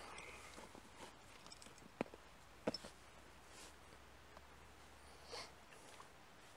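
Faint, sparse handling sounds of a glass beer bottle, bottle opener and drinking glass: a sharp click about two seconds in, a couple more clicks shortly after, and a short soft rustle near the end, over near quiet.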